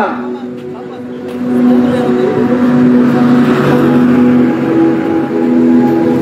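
A motor vehicle's engine running close by: a steady hum, with a rush of engine and road noise that swells about a second in and holds.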